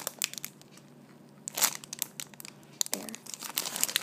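Clear plastic bag around a squishy foam donut crinkling as fingers squeeze it. It comes in irregular bursts of sharp crackles, the loudest about a second and a half in.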